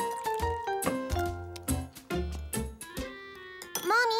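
Light background music: short pitched notes stepping up and down over a bass line, settling on a held note near the end.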